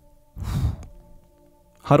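A man's short sigh into a close microphone, about half a second in and lasting about half a second. Faint held background music tones follow, and speech resumes right at the end.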